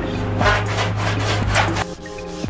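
Body file rasping across a VW Beetle's steel roof panel in several long strokes, the filing showing up the low, dented spots in the metal, over background music with a steady bass.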